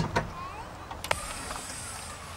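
Two sharp knocks at the start and another about a second in, over steady background noise that turns into a high hiss after the third knock.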